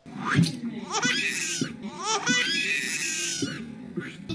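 Baby-voice sound effect: two runs of high-pitched, wavering squeals that sound like a baby crying in distress rather than a gleeful baby laughing.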